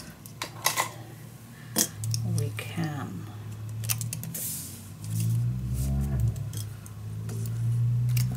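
Small steel binder clips clicking as they are opened and clamped onto folded cardstock, with paper being handled. Under it runs a low, wordless hum from a person's voice, loudest past the middle.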